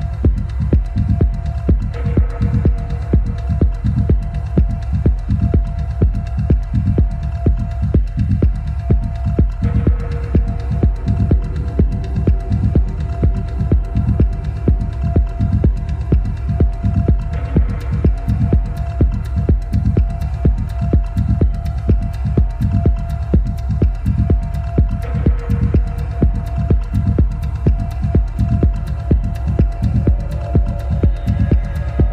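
Deep, hypnotic techno: a steady four-on-the-floor kick drum at about two beats a second over heavy sub-bass. A held synth tone runs beneath it, and a brief phrase change comes back about every seven and a half seconds.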